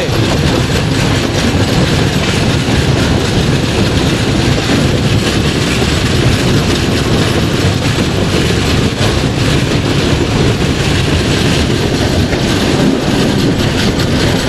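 Passenger train coach running at speed, heard from its open doorway: a steady, loud rumble of steel wheels on the rails.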